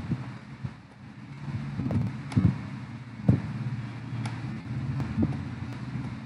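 A low rumble with a steady hum, broken by a few sharp knocks.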